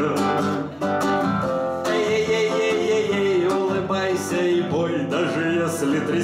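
A man singing to his own strummed classical acoustic guitar, a light reggae rhythm with the sung melody carrying over the chords.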